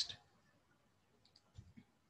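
Near silence: room tone, with the last of a man's word at the very start and a few faint clicks and low bumps about a second and a half in.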